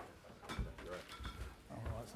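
Indistinct short vocal sounds from a man, not clear speech, with a few low, dull knocks.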